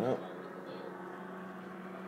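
A steady low hum holding one even pitch, with a short voice-like sound right at the start.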